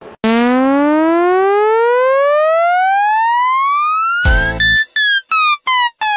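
Electronic sound effect: a single buzzy tone rises steadily in pitch for about four seconds. A short burst of music follows, then a run of short tones stepping down in pitch, broken by brief gaps.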